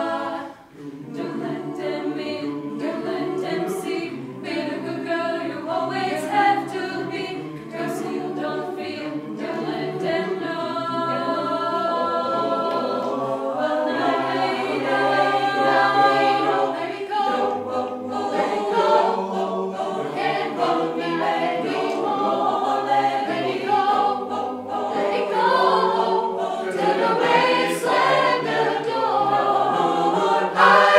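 Mixed chamber choir of women's and men's voices singing a cappella in several parts. After a brief break in the sound just after the start, the singing runs on without pause and grows a little louder towards the end.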